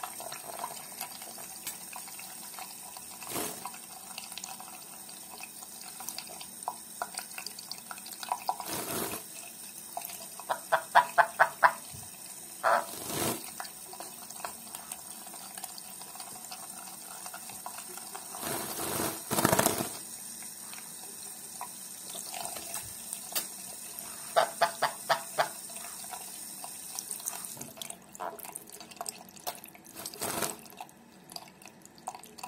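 A tap running steadily into a sink, with a sun conure bathing in the stream and several louder splashes. Twice the conure gives a quick run of short repeated chattering notes, its 'laughing' at the water.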